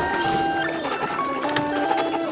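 Intro music: a melody of held notes stepping up and down in pitch.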